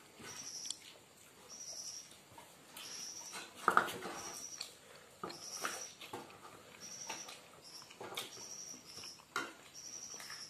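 Close-up mukbang eating sounds from hand-eating rice and curry: irregular wet smacks, clicks and chewing, the loudest a little under four seconds in. Throughout, a short high-pitched chirp repeats about once a second.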